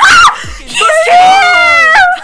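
Young women screaming in excitement: a short shriek, then one long, high scream held for over a second that sags in pitch at the end.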